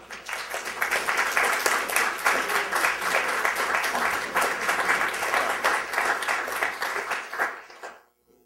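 Audience applauding: many hands clapping, starting right away, holding steady, then dying away near the end.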